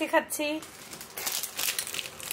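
Plastic ice-lolly wrapper crinkling in a hand, an irregular crackle after a short child's voice at the start.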